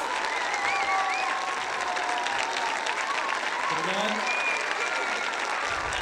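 Audience applauding steadily, dense clapping with a few voices carrying over it.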